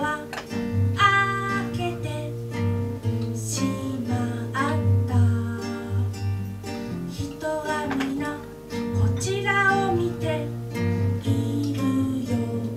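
A woman singing to her own acoustic guitar accompaniment, the voice rising and falling in sung phrases over the steady guitar.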